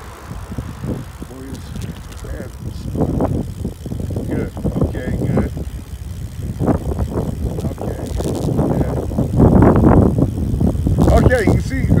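Wind buffeting the microphone of a cyclist's phone while coasting downhill, an uneven rumble that grows stronger about three-quarters of the way through. Early on, the road noise of a pickup and camper trailer that has just overtaken fades away ahead.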